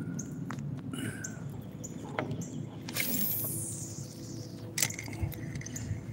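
Quiet outdoor ambience on the water, with a few light knocks and a brief swish about three seconds in.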